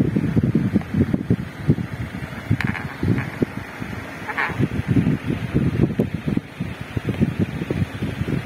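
Electric fan running, its airflow buffeting the microphone with irregular low wind noise.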